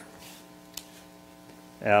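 Steady electrical mains hum with a row of even overtones, heard plainly in a pause between a man's words. His voice comes back near the end.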